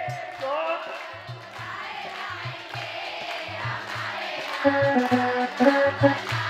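A crowd singing along to Hindu devotional music that has a steady drum beat. Near the end, held instrumental notes come back in.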